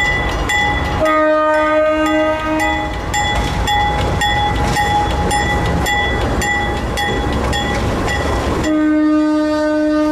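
Diesel locomotive horn sounding a blast of about two seconds, then a second long blast starting near the end, as the locomotives rumble past with wheel clatter. Between the blasts, a grade-crossing bell rings steadily at about two strikes a second.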